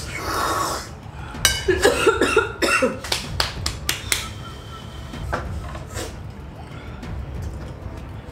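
A person coughing from the burn of extreme spicy ramen: a run of short, sharp coughs starting about a second and a half in, with a couple more a little later.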